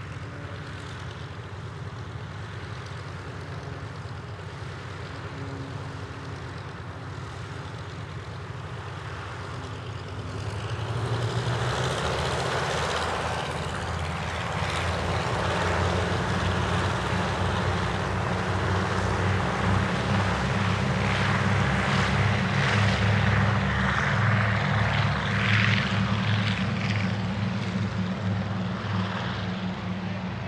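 Four Pratt & Whitney R-1830 radial engines of a Consolidated B-24 Liberator, running low at taxi power, then opening up to takeoff power about ten seconds in. The engine and propeller noise grows louder through the takeoff roll and eases slightly near the end as the bomber lifts off.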